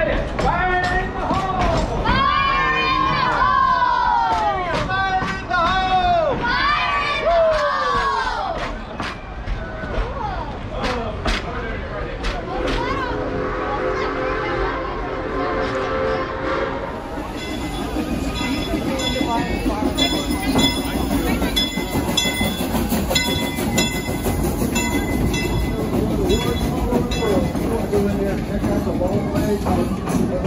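A narrow-gauge excursion train passing close by: squealing wheels and clicking over the rail joints for the first several seconds, then a whistle held for about four seconds midway. After that comes a steady run of rail-joint clicks as the coaches roll along.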